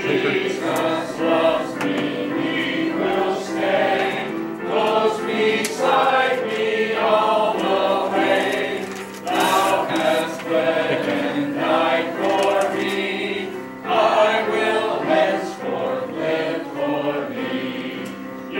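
Church congregation singing a hymn together, many voices in steady sung phrases.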